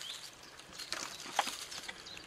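Dry leaf litter rustling and small hazelnut shells clicking as a hand sorts through them on the woodland floor, with a few sharp little clicks, one of them about one and a half seconds in.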